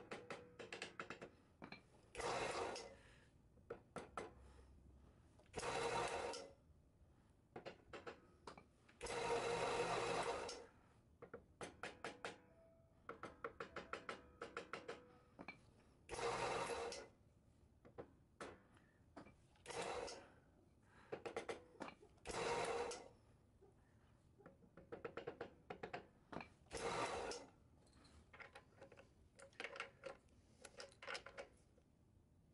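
Ratchet wrench working the bolts of a bandsaw's metal blade guide adjuster bracket: quick runs of clicks, broken by seven louder, roughly second-long buzzes as the ratchet is swung or spun fast.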